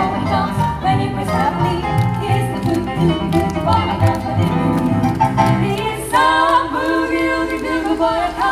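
Live band playing a fast boogie-woogie instrumental passage on keyboard and upright double bass, without singing. About six seconds in, long held chords come in over it.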